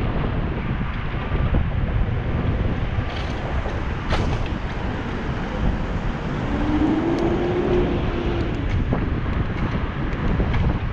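Wind buffeting the microphone of a bicycle-mounted action camera while riding in city traffic, with a steady low rumble of road and traffic noise. A brief low tone sounds about two-thirds of the way through.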